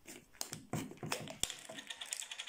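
Plastic screw cap being twisted off a capsule bottle: a series of small clicks and scrapes, with one sharper click about halfway and a run of quick light clicks near the end.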